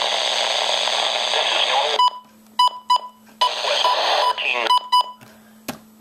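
Midland weather radio's speaker playing the NOAA weather broadcast through heavy static, in two stretches that cut off suddenly about two seconds in and again a second or so later, as the Weather/Snooze button is pressed. Short electronic key beeps sound between and after the stretches.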